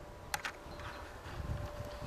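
Quiet outdoor background noise with a low, uneven rumble, one short click about a third of a second in, and a faint steady high tone.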